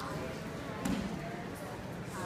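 Faint children's voices and chatter in a mat room, with one dull thump about a second in.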